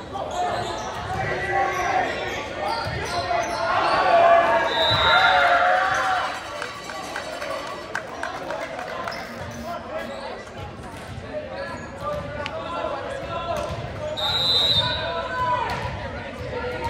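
Volleyball rally in an echoing gym: the ball being hit and bouncing with sharp knocks, over players and spectators shouting and cheering, loudest as the point is won about five seconds in. A short referee's whistle sounds at that moment and again near the end.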